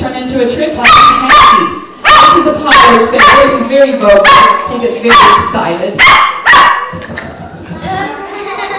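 Small white poodle barking, a run of about ten sharp barks, many in pairs, stopping shortly before the end.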